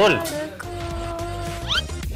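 Edited-in music sting: a steady held note over a low bass, broken near the end by a quick upward glide.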